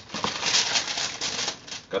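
Wrapping paper from a sneaker box crinkling and rustling as it is handled: a dense, steady stream of small crackles that stops just before the end.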